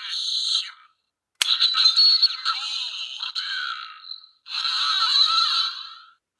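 A gold Lockseed collector's toy playing electronic sounds through its small built-in speaker in three bursts, thin with no bass. The second burst starts with a sharp click of its button.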